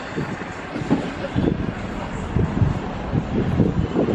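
Wind gusting on the microphone over the steady noise of road traffic.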